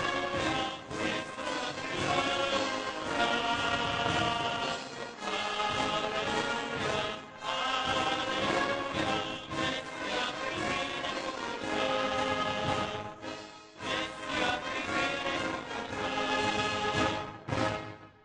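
Church brass band with trumpets playing a piece in full, sustained chords. The music stops at the very end.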